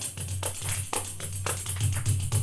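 Live percussion music: a hand-held tambourine struck with the palm in a quick, steady rhythm, its jingles ringing over a continuous low drum and bass pulse.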